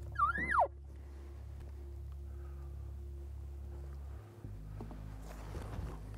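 A single short elk call about a quarter-second in: a whistle that rises, then drops steeply in pitch, lasting about half a second. A low steady hum runs beneath it.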